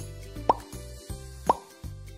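Two short rising cartoon 'bloop' sound effects, one a second, ticking off a quiz countdown, over light background music with a steady bass.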